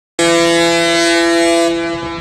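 A cruise ship's musical horn sounds a long, loud chord of several notes held together. It starts suddenly, and one of the upper notes drops out shortly before the end.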